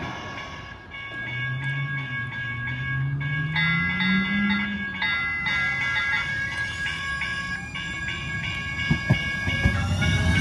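TriMet MAX light-rail trains running: a low electric motor whine rises in pitch over a few seconds as a train gets under way. Steady high tones sound throughout, and a few short knocks come near the end.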